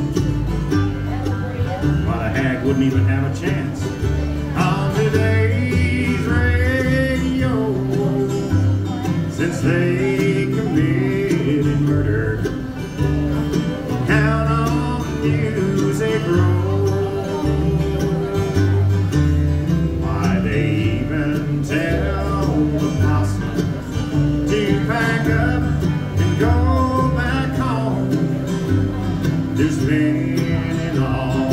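Live bluegrass band playing a song: banjo, mandolin and acoustic guitar over an upright bass stepping from note to note, with a voice singing phrases in between.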